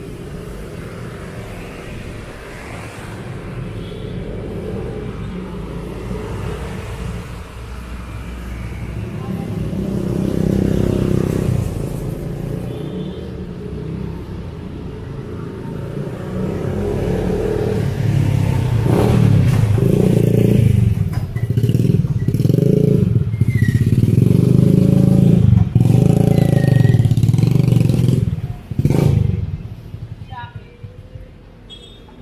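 Street traffic: motor vehicles, among them a jeepney's diesel engine and motorcycles, running close by. The low rumble grows louder over the second half, then drops away sharply near the end.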